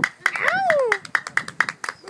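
Rhythmic hand clapping, several claps a second, accompanying Bedouin music. About a third of a second in, a voice cries out a note that rises and then falls.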